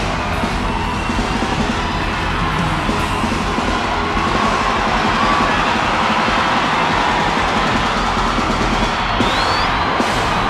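Live band music played loud at a stadium concert, with a large crowd cheering and screaming over it. A short rising high tone sounds near the end.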